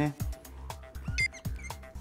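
Background music with a regular low beat and held notes. A little over a second in comes a brief high squeak from a marker on a whiteboard.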